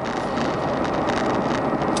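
Steady road and engine noise heard from inside the cabin of a 1996 Chevrolet Corsa 1.6 GL driving along a highway.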